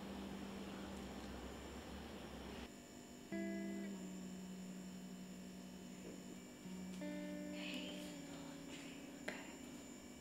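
Soft background music: a few sustained plucked-guitar notes playing quietly, with a faint click near the end.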